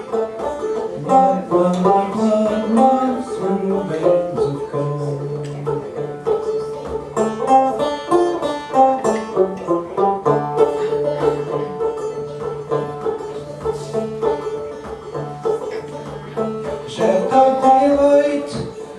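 Banjo picking an instrumental passage of plucked notes, with a held low note sounding underneath for long stretches.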